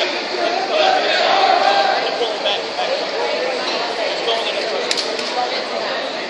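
Crowd of spectators in a gym talking and calling out over one another, a steady indistinct babble of voices with a few sharp clicks around five seconds in.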